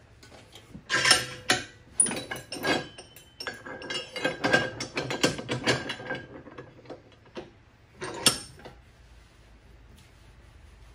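Metal tool clatter at a bench vise as a long dent-working rod is handled and set in the jaws: a run of sharp clicks and knocks with a ratcheting rattle in the middle, the loudest knocks about a second in, and one more knock at about eight seconds.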